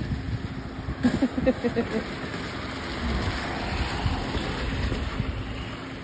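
Steady outdoor rumble and hiss that swells for a few seconds in the middle, with a short bit of voice about a second in.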